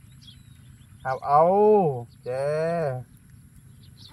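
Two drawn-out vocal sounds about a second in: the first rises and falls in pitch, and the second is held at one pitch for about a second.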